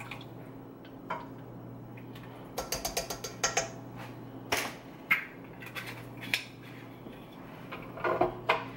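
Kitchen handling sounds: a measuring spoon and an oil bottle being set down and put aside by a wire dish rack, giving scattered clicks and clinks, with a quick run of clicks about three seconds in. A steady low hum lies under them.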